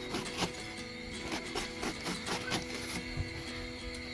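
A cleaver shredding a head of cabbage on a wooden chopping board: a steady run of crisp knife strikes, about three or four a second. Background music with held tones plays underneath.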